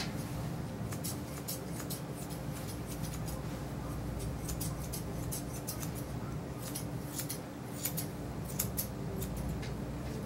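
Grooming shears snipping through a Yorkshire Terrier's coat in short, irregular clicks.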